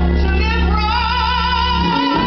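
A woman singing a gospel solo. About a second in she settles into a long held note with vibrato, over a low steady drone.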